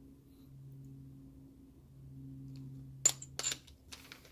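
A low steady hum, then two or three sharp metallic clinks with a brief high ring about three seconds in, as a small steel cutting bit is set down on the workbench.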